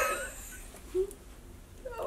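A woman's excited high-pitched squeal that slides down in pitch and fades, with a short faint vocal squeak about a second later.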